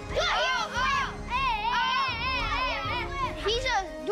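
Children's high-pitched squeals and wavering shouts over background music.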